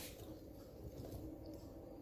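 Quiet room background with a low steady hum and no distinct sound.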